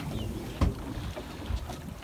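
Wind on the microphone and the low rumble of a boat on open water, with a sharp knock a little over half a second in and a softer one about a second later.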